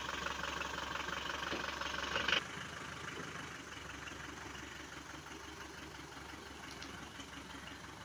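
Force Traveller van's diesel engine running at idle with a light clatter while the van is backed out and turned. The sound drops in level about two and a half seconds in and carries on more quietly.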